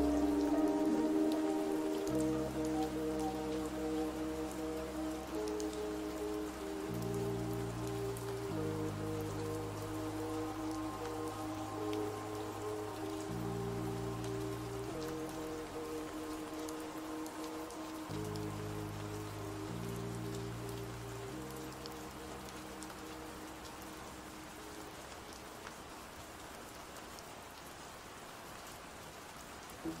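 Steady rain over a slow lofi track whose bass and chords change every couple of seconds; the music fades out gradually while the rain carries on, and the next track starts right at the end.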